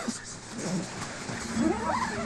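A man's pained vocal sounds after breathing CS gas: breathy gasping, then a rising cry near the end.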